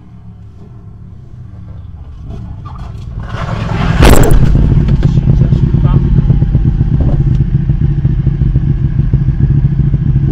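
Motorcycle engine drawing closer and getting louder, with a sudden loud rush about four seconds in, then running close by with a steady low throb, heard from inside a car.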